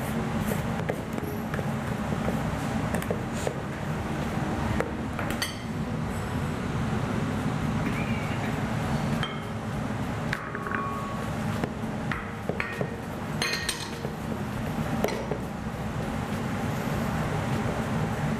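Wire whisk beating pancake batter in a bowl, its wires clicking and clinking against the bowl in irregular bursts, over a steady low hum.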